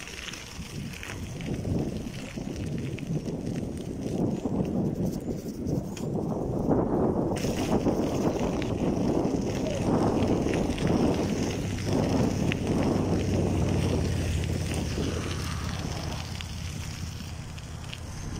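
Bicycle rolling over a gravel path, the tyres crunching and wind buffeting the microphone, growing quieter over the last few seconds.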